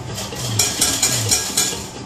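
Slot machine game sounds during a free-game spin: a quick run of sharp clicky hits, about five a second, over short low tones.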